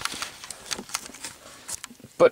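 Handling noise: a scatter of light clicks and rustles as the handheld camera is picked up and an iPod on its plugged-in cable is handled, thickest in the first second and thinning toward the end.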